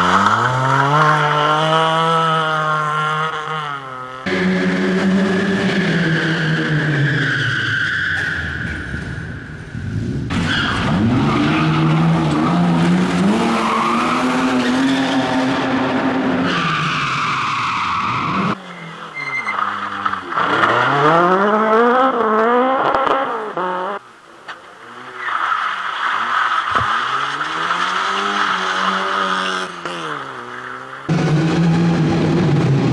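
Small rally cars' petrol engines revving hard through a tight tyre-marked course, the pitch climbing and falling with throttle and gear changes, with tyre squeal in the turns. The sound jumps abruptly every several seconds from one car to another.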